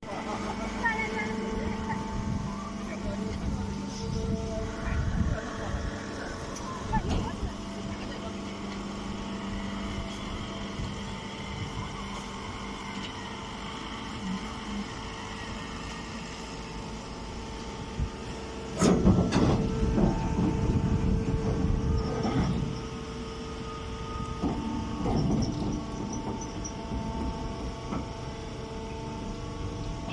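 Hydraulic hay baler running: a steady hum from its motor and pump, with clattering and knocks that grow loudest for a few seconds past the middle.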